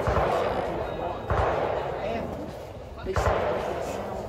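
Distant gunfire from a shooting range: single shots about every two seconds, each followed by a long rolling echo.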